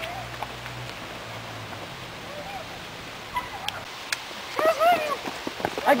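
Running footsteps on mulch and concrete with the rustle of a handheld camera being carried at a run, a low steady hum under the first two seconds, and a few short clicks a little after the middle.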